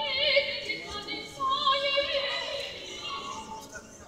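A woman singing a Spanish aria in operatic style, holding long notes with a wide vibrato.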